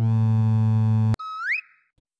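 A party horn (torotot) sound effect: one steady, buzzing horn blast lasting about a second that ends with a click. A short, quieter whistle rising in pitch follows.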